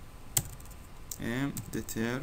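Computer keyboard keys being typed: one sharp key click about a third of a second in, then a few fainter clicks.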